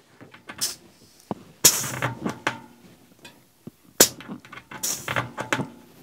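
Brief hisses of air escaping at a bicycle tyre's Schrader valve as a LockNFlate air chuck is fitted onto it: two short bursts about three seconds apart, with a sharp click between them. The chuck does not seal well on this valve.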